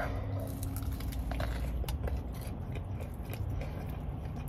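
A person biting into and chewing a fried potato-and-cheese corn dog close to the microphone: a run of small scattered clicks and crunches. A low steady hum runs underneath.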